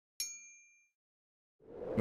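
A single bright bell ding, a notification-style chime from a subscribe-button bell sound effect, struck once and ringing out over about half a second.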